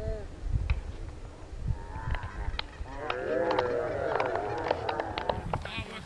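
Several players shouting and calling out at once across a football pitch. The calls start about two seconds in and are thickest in the middle, over a low rumble.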